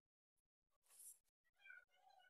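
Faint rustle of pink craft paper being folded by hand about a second in, followed near the end by a faint, brief high-pitched cry.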